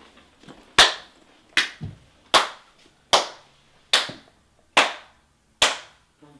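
A sarcastic slow clap: one person clapping seven times, evenly about one clap every 0.8 seconds.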